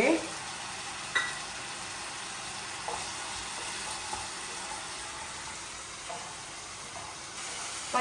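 Food frying in oil in a nonstick wok, a steady low sizzle, stirred with a wooden spatula. A single light knock about a second in.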